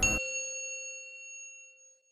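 A single bell-like ding in a news programme's intro sting, struck at the start and ringing out, fading away over about a second and a half.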